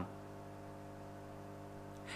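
Steady low electrical hum with a faint hiss underneath. It holds one unchanging pitch, with no knocks or other events.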